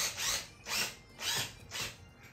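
A screw being driven into the lamp's metal frame with a small hand tool, five short scraping strokes at about two a second, one for each turn.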